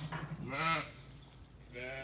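A Zwartbles sheep bleats once, a short call about half a second in.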